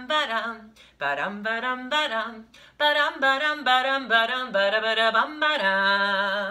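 A woman singing a simple children's hello song unaccompanied, ending on a long held note.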